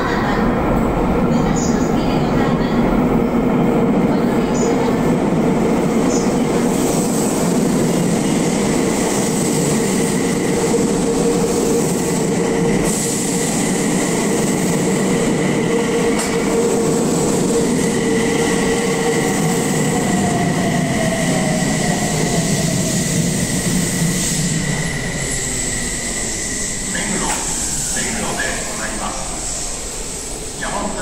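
Six-car Tokyu Meguro Line electric train running into an underground platform and braking. A heavy rumble of wheels and motors carries steady whining tones, with a falling motor whine partway through. It eases off toward the end, with a few sharp clicks as it comes to a stop.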